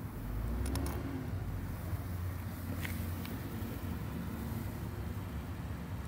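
Car engine running at a low, steady idle as the car creeps forward, its rear tyre rolling over a metal tube vape mod on asphalt. The low rumble swells in the first second or so, and a few faint light ticks sound through it.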